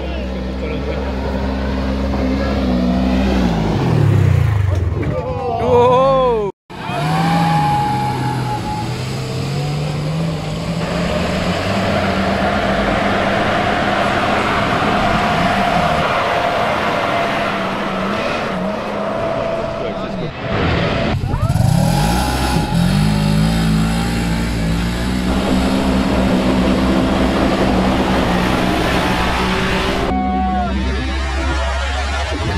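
Off-road vehicle engines revving hard up a dirt hill climb, their pitch repeatedly rising and falling through gear changes, with a brief break about six and a half seconds in.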